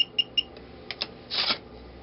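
An RFID reader board's buzzer gives a quick run of short, high beeps, about five a second, signalling that a card has been programmed to a relay. About a second in come two light clicks, then a short rustle as a plastic RFID card is handled.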